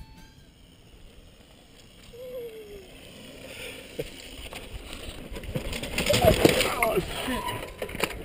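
Mountain bike rolling down a dirt trail, tyre and ride noise building from faint to loud, with a sharp knock about four seconds in. Voices come in near the end as the riders stop.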